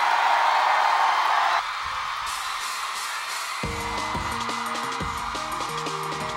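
An audience cheers as a stage performance ends, and the cheering drops away after about a second and a half. About three and a half seconds in, a band song starts with a repeating keyboard riff over a beat.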